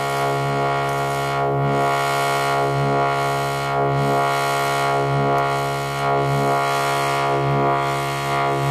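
Buchla modular synthesizer: a steady sawtooth drone from a 258V oscillator running through the 291e triple morphing filter, swelling and brightening about once a second as an envelope shapes the filtered tone.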